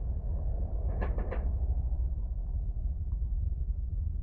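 A steady low background rumble, with a short cluster of three quick clicks about a second in.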